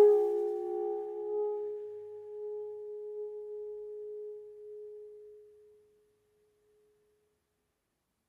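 Alto saxophone holding one long note that softens gradually and fades out to nothing about six seconds in.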